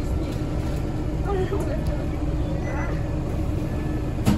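A Scania DC9 five-cylinder diesel bus engine running, heard from inside the passenger cabin as a steady low rumble with a faint steady hum. Faint voices sit in the background.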